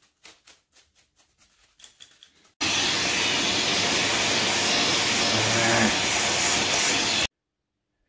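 Vacuum cleaner running as its nozzle is passed over a guitar pedalboard to suck up dog hair. It starts suddenly a few seconds in, after some faint handling clicks, runs steadily with a low motor hum, and cuts off abruptly near the end.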